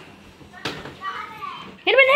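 Children play-wrestling in a small room: a sharp knock a little over half a second in, then a child's loud, high, held yell near the end.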